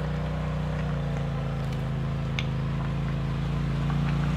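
Side-by-side UTV engine running at a steady low drone, slowly getting louder as the machine comes down the rock ledges.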